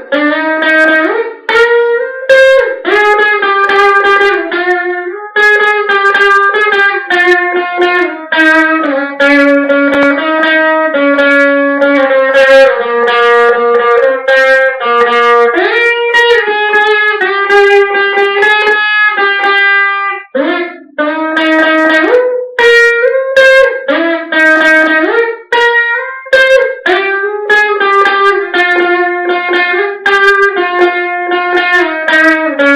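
Stratocaster-style electric guitar playing a single-note melodic solo of held notes, sliding up into several of them. There is a brief break about two-thirds of the way through.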